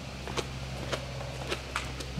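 A few footsteps and light knocks from handling a doormat, scattered over a steady low hum.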